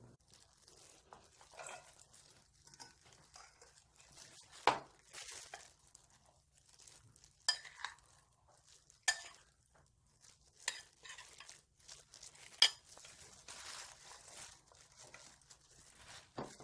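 A metal spoon stirring and scraping seasoning sauce in a glass bowl, with about five sharp clinks of spoon on glass spaced a second or two apart, over soft rustling.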